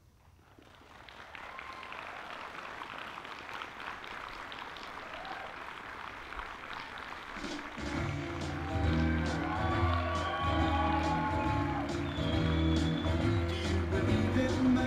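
Audience applause rising out of near silence. About halfway through, music with a strong bass line comes in and plays on under the clapping.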